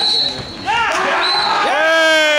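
Referee's whistle blown in two short high blasts, with men shouting between them; near the end a long drawn-out shout begins, slowly falling in pitch.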